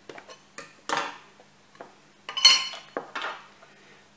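Spoon and kitchen utensils clinking on dishes as cocoa is measured out: a few light taps, then a louder ringing clink a little past halfway, followed by a couple more knocks.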